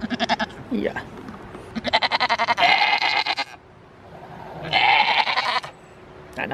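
Goats bleating: a short call at the very start, a long wavering bleat about two seconds in, and another wavering bleat about five seconds in.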